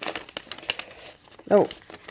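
Paper being handled: sheets and an envelope rustling and crinkling in the hands, a run of small irregular crackles and ticks.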